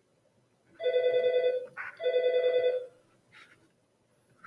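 A telephone ringing: two trilling electronic rings, each just under a second long, with a short gap between them.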